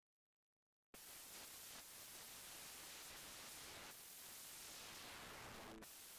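Digital silence, then about a second in a faint hiss-like residue starts and runs on with slight swells. It is what is left of a null test between a 24-bit track and its 8-bit export made without dither: the music cancels and the quantization error of the undithered export remains.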